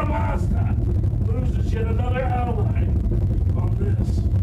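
A voice speaking in short phrases, too muffled or indistinct to make out, over a steady low rumble.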